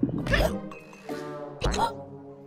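Cartoon background music with held notes, broken twice by a cartoon character's short gleeful vocal outbursts, once about half a second in and again near the end.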